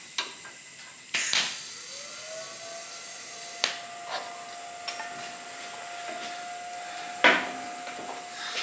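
TIG welder tacking a new hardtail tube onto a motorcycle frame. A bright hiss starts about a second in as the arc strikes and lasts a couple of seconds, then a quieter hiss continues under a thin steady whine. There are a few small clicks and a short sharp burst near the end.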